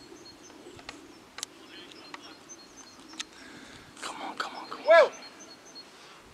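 Open-air ambience at a football pitch, with faint distant voices and a few short sharp knocks, then one loud short shout about five seconds in.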